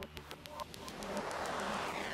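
Faint background music: a light, evenly spaced ticking beat with a hiss-like swell that rises through the second half.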